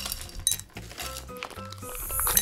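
Ice cubes dropping and clinking against the inside of drinking glasses in a few sharp clicks, with light background music throughout.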